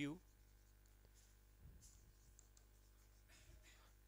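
Faint scratching of a stylus writing words on an interactive display board, in a few short strokes, over a steady low electrical hum.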